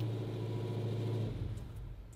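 Parked car's engine idling with a steady low hum that fades away after about a second and a half.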